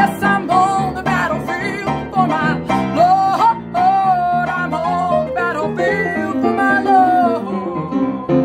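Acoustic country gospel band playing an instrumental break: a lead line with bending, sliding notes over a steady strummed and chorded accompaniment.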